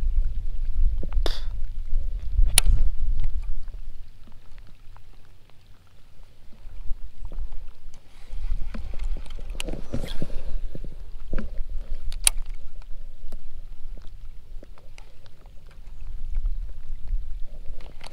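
Low rumbling wind buffeting the camera microphone, easing for a few seconds in the middle, with a few sharp clicks and taps from a baitcasting rod and reel being cast and retrieved.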